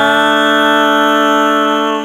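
Closing chord of a country-rock band recording, held steady and loud, beginning to die away near the end.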